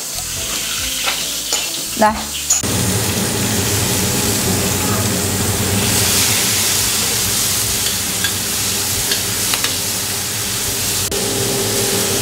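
Garlic and sliced chillies sizzling in hot oil in a wok while being stir-fried, with a spatula scraping and ticking against the pan. The sizzle starts about two and a half seconds in and grows louder and brighter around the middle.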